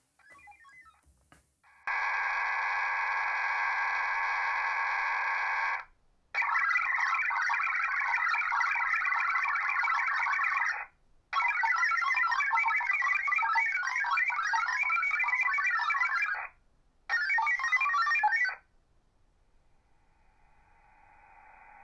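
HF digital data-mode modem tones coming through a (tr)uSDX QRP radio. A steady chord of several tones lasts about four seconds, then come three bursts of dense warbling tones separated by short gaps, all held within a narrow band like a voice channel.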